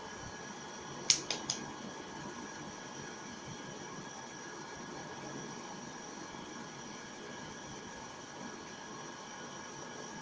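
Steady room hiss with faint steady tones, and three quick clicks a little over a second in, the first the loudest.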